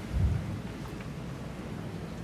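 A brief low thump about a quarter second in, over a faint room murmur.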